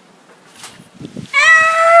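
A child's loud, high-pitched, drawn-out cry held on one steady pitch, starting about one and a half seconds in after a quiet stretch. It is a reaction to a missed trick shot.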